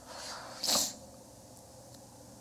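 A person sneezing: a short in-drawn breath, then one sharp sneeze about three-quarters of a second in.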